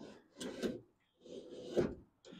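Manual window regulator and door glass of a 1967 Pontiac Firebird being cranked, metal arm and glass sliding and rubbing in freshly greased tracks, in three short scraping strokes with the loudest near the end.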